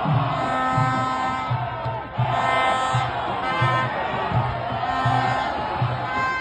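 Football fans chanting in the stands over a steady drum beat, about two beats a second.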